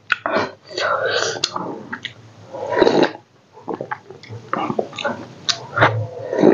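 Close-miked chewing and wet mouth noises of a person eating rice and pork by hand, in short irregular bursts with sharp clicks.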